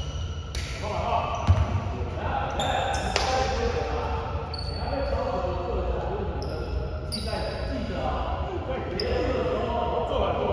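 Several basketballs bouncing on a court floor in repeated irregular thuds, with one sharp louder impact about a second and a half in and scattered short high squeaks, under players' voices.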